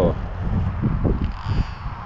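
Wind rumbling on the camera microphone, with faint indistinct voices in the background.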